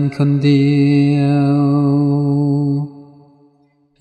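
Background song: a singer ends a Thai lyric line and holds one long, steady note that fades out about three seconds in.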